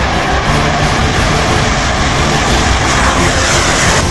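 Fighter jet engine roar, growing louder near the end, with background music underneath.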